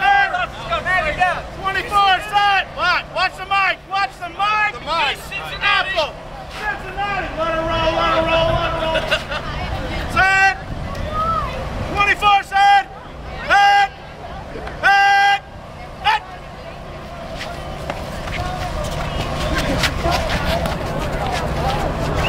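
A rapid string of loud shouted calls for the first few seconds, then a horn sounding several short, flat blasts between about ten and sixteen seconds in, and crowd noise swelling near the end.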